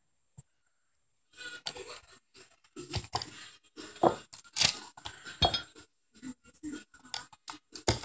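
Irregular light clinks, taps and scrapes of pouring containers handled against a funnel while melted melt-and-pour soap is poured, starting about a second and a half in.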